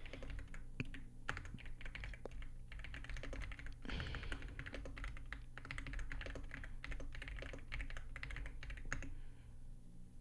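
Computer keyboard being typed on in quick bursts with short pauses. A louder keystroke comes about nine seconds in, and then the typing stops.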